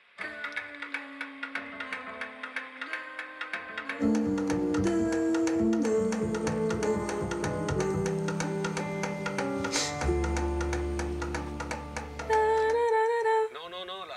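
A recorded song: a lighter opening with a steady percussion beat, then a fuller, louder band coming in about four seconds in, with a deep bass note near the end and a singing voice briefly over it.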